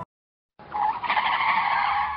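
The music cuts off, and about half a second later a harsh, hissing noise comes in and holds steady.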